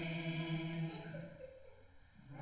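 A group of voices singing a held note together in unison, a solfège syllable sung at sight as it is pointed to; the note fades out about a second and a half in.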